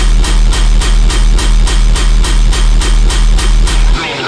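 Heavy dubstep played loud in a live DJ set: a fast, even run of hard percussive hits, about four a second, over a sustained deep bass.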